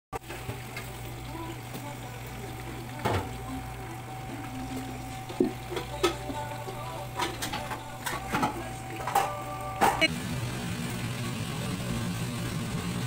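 Food deep-frying in a pot of oil, a steady sizzle, with metal tongs clicking against the pot several times. About ten seconds in it gives way to a lower, louder kitchen hum.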